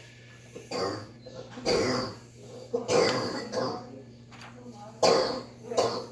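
A person coughing in a series of about five short, sudden coughs spread over several seconds.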